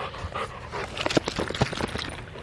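A golden retriever panting close by, with rustling and knocks as the camera is handled, the knocks thickest in the second half.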